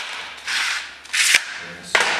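Handling noise on a workbench: a few sharp clicks and two short hissing scrapes, the louder one ending in a click about 1.3 seconds in.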